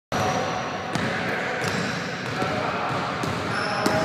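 A basketball bouncing a few times on a hardwood gym floor, sharp and irregularly spaced, with the echo of a large hall, over steady background voices.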